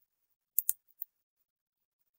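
Computer mouse clicked twice in quick succession, about a tenth of a second apart, then once more, fainter, with silence around them.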